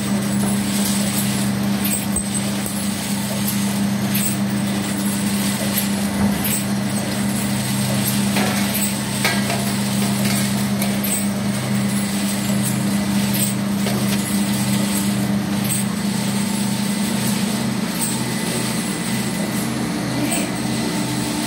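Eight-head ampoule filling machine running: a steady low mechanical hum with repeated sharp clicks from its mechanism. From about three quarters of the way in the hum pulses in a regular rhythm of roughly two beats a second.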